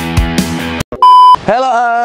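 Rock music with drums stops suddenly just under a second in; a single loud, steady electronic beep follows for about a third of a second, then a man starts speaking.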